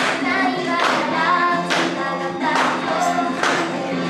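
J-pop idol song performed live: young women singing in unison into handheld microphones over a pop backing track, with a sharp beat a little faster than once a second.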